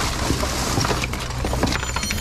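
Junk being rummaged by hand in a bin: plastic bags and crumpled packing paper rustling continuously, with a few small knocks of scrap shifting.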